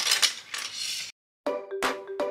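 Plastic LEGO pieces clattering as they are handled, cut off by a moment of dead silence; about a second and a half in, background music starts with a steady note and a sharp beat about three times a second.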